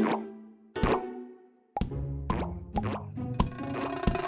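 Cartoon background score: a sneaky cue of short plucked, plopping notes, each with a quick downward slide. The notes come about two a second after a brief hush.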